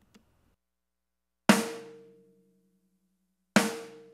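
Snare drum sample played back twice, about two seconds apart, each hit ringing briefly with a pitched tone as it fades. It passes through a compressor whose threshold is so high that no compression is happening, so the hits keep their full, raw attack.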